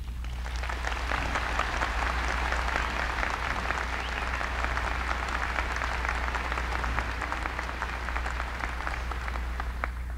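Large audience clapping in sustained, dense applause, easing off slightly near the end.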